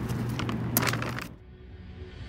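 Rustling and clicking from a bag of bedding being handled, then a little over a second in this cuts off and background music fades in, muffled at first and growing brighter.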